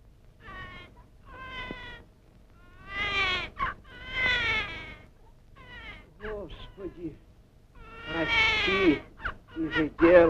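A series of drawn-out wailing cries, each one a pitched call that rises and falls, about eight in all, with the loudest near three, four and eight and a half seconds in.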